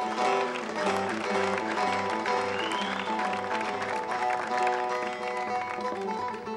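Bağlama (Turkish long-necked lute) playing a quick picked melody of a Turkish folk song (türkü) in an instrumental passage between sung verses.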